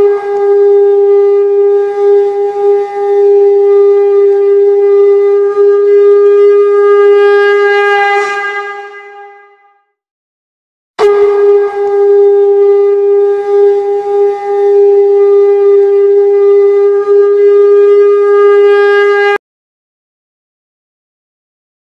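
Conch shell (shankh) blown in two long, steady blasts, as at the close of an aarti. The first blast fades out about nine or ten seconds in; after a second's pause the second one sounds and cuts off suddenly near the end.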